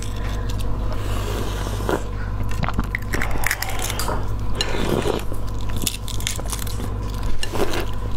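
Eggshell crackling and scraping as an egg is peeled by hand with the fingernails, a close-up string of small sharp clicks and crackles.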